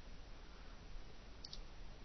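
A single soft computer mouse click about one and a half seconds in, over a faint steady hiss.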